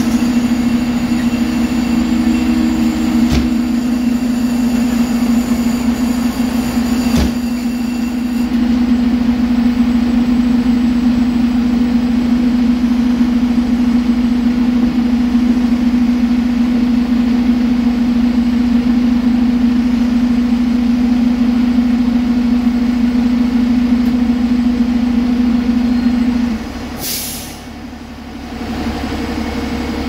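Heavy fire-rescue truck's diesel engine running in a steady, loud drone. About 27 seconds in the drone drops and there is a short, sharp hiss of air from the truck's air brakes.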